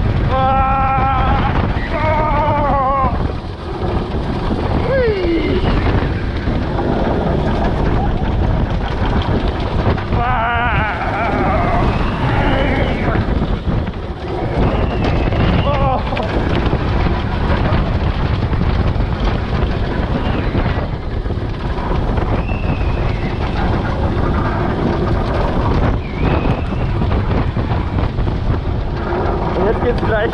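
Mammut wooden roller coaster's train running at speed over its wooden track, heard from on board as a loud, steady rumble with heavy wind noise on the microphone. Riders scream and whoop over it, loudest about a second in and again around ten to thirteen seconds, with shorter cries later.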